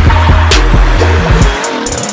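Hip-hop backing track with heavy bass and drum hits, over which a car's tyres squeal in a wavering tone as it drifts; the bass drops out near the end.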